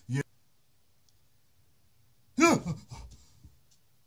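A man's short wordless shout, rising then falling in pitch, about two and a half seconds in, followed by a few faint clicks.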